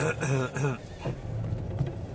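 A voice, likely from the car's radio, heard briefly over the steady low hum of a car's cabin while driving.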